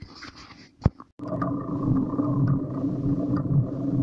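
Quiet at first, with one sharp click about a second in. Then, after a cut, a steady rumble of riding: wind and tyre noise on a bicycle-mounted camera.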